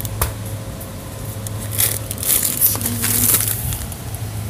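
Soft plastic packaging crinkling and rustling as a wrapped pack is handled, in a few bursts in the second half, with a sharp click just after the start. A steady low hum runs underneath.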